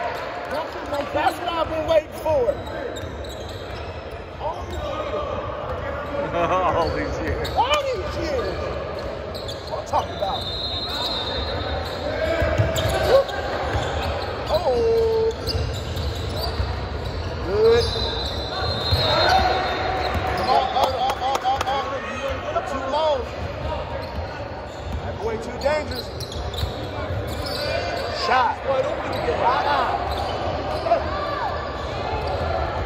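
Basketball game in a gym hall: a ball bouncing on the hardwood court, short sneaker squeaks from players running and cutting, and players and spectators calling out, all echoing in the large hall.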